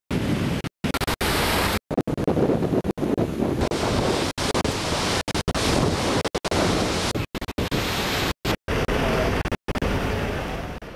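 Wind rushing over the microphone with the sea behind it, a steady noise broken again and again by brief cuts to total silence.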